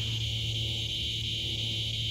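Steady evening chorus of crickets: a continuous high-pitched trill with no breaks. A steady low hum runs underneath it.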